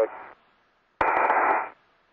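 A short burst of radio static on a space-to-ground voice loop, heard through a narrow, telephone-like band. About a second in it starts with a click, hisses for under a second, then cuts off, as the channel is keyed and unkeyed with nobody speaking.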